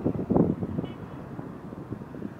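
Roadside traffic: a motorcycle passes close by, with wind buffeting the microphone. The sound is loudest in the first half second, then settles to a steady rumble.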